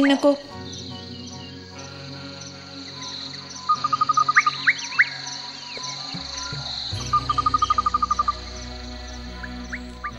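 Sustained low music notes under a nature soundscape: insects chirping steadily, and two bursts of a rapid trill with a few quick rising chirps in between, about four and seven seconds in.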